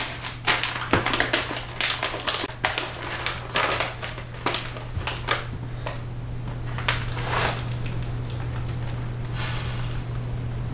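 A Mylar food-storage bag filled with dry food crinkling and rattling as it is handled: a quick run of crackles over the first half or so, then two softer rustles as it is worked flat for heat sealing. A low steady hum runs underneath.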